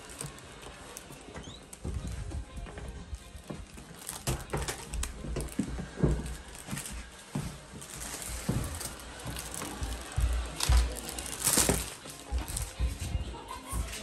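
Irregular low thumps with scattered clicks and rustles: footsteps and handling noise as people walk across indoor floors.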